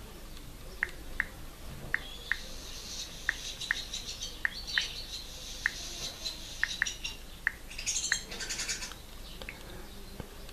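Key-press tones from a Samsung Galaxy Y's on-screen keyboard, one short high tick per letter as a word is typed, about two a second with uneven gaps.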